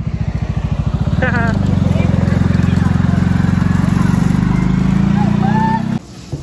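A motor running steadily with a fast low pulse, cutting off suddenly at the end.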